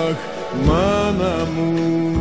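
Greek laïko song: a male singer draws out an ornamented, wordless 'Ah' with bending pitch over the band, which then settles on steady held notes near the end.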